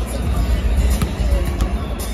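Arena sound-system music with heavy bass fills the court, over crowd chatter. A basketball knocks once on the hardwood floor about a second in.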